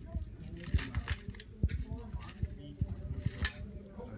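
Indistinct chatter of several people in the background, with scattered short low knocks and thumps.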